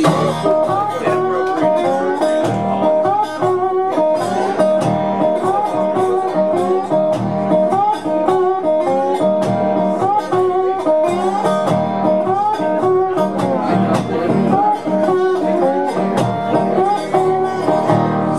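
Resonator guitar (dobro) played solo as an instrumental blues intro: plucked notes in a repeating riff, many of them sliding up into pitch.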